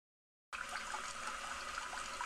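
Steady trickling stream of liquid, a man urinating into a urinal, starting about half a second in after a moment of dead silence.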